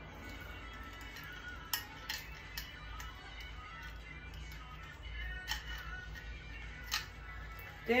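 Faint background music, with a few sharp clicks and clinks as small plastic plugs and metal frame tubes of a bassinet are handled and fitted together.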